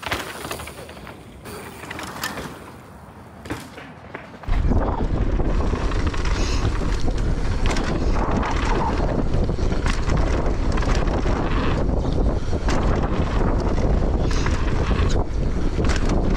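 Mountain bikes rolling over a dirt jump line, with light clicks and rattles at first; about four and a half seconds in, loud wind rush on the microphone comes in suddenly and stays steady as the ride picks up speed.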